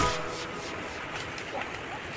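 Shallow stream running over rock slabs: a steady rush of flowing water.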